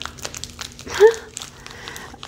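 Clear plastic wrapping and tape crinkling and crackling in short clicks as hands pick and pull at them. About a second in there is a brief hummed vocal sound from a person.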